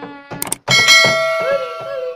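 Subscribe-button animation sound effect: two quick clicks, then a bright bell ding about two-thirds of a second in that rings and fades slowly.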